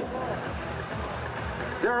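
Steady background din of a robotics competition arena, with music playing under it.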